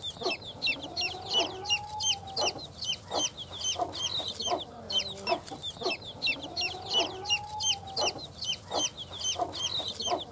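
Newly hatched black Kadaknath chicks peeping continuously, many short high cheeps each second, with a broody Light Sussex hen clucking low among them. Twice the hen gives a longer drawn-out call that rises and falls, about a second and a half in and again about six and a half seconds in.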